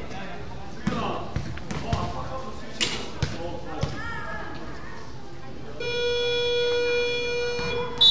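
A few basketball bounces and thuds on the gym floor, then an electronic buzzer in the hall sounds one steady tone for about two seconds near the end, over voices in the gym.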